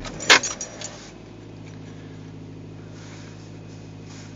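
2011 Nissan Sentra SE-R Spec-V's 2.5-litre four-cylinder engine cold-starting at −16 °C. It catches with a sharp burst about a third of a second in, then settles within a second into a steady, fast cold idle.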